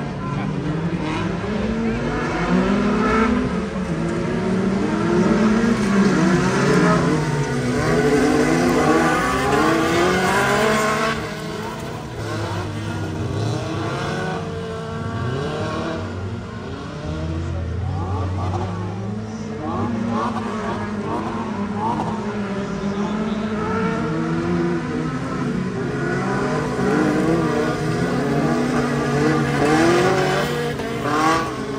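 Several stock cars racing on a dirt oval, their engines revving up and falling back over and over as they accelerate and lift for the turns, many engine notes overlapping.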